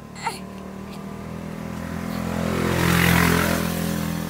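An engine passing by: a low, steady hum that grows louder to a peak about three seconds in and then fades. A brief click comes near the start.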